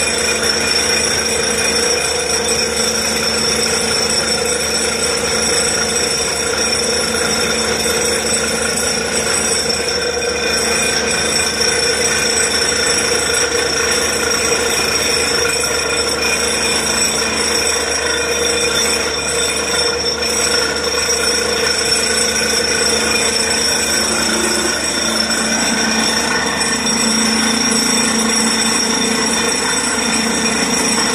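Borewell drilling rig powered by an Atlas Copco XRV 1200 air compressor, running steadily as compressed air blows water and cuttings out of the casing. It is a constant, unchanging machine noise with several held tones over a hiss of rushing air and water.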